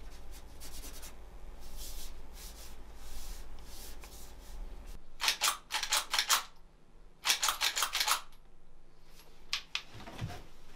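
Two bursts of rapid, sharp metallic clicks and clacks, each about a second long, from a pump shotgun being handled and worked. Before them comes faint scratching of a pen on paper.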